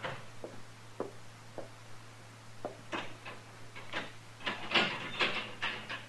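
Radio-drama sound effects of footsteps on a wooden floor, about two a second, then a quick cluster of louder clicks and knocks near the end, as a jail door is worked. A steady low hum from the old recording sits underneath.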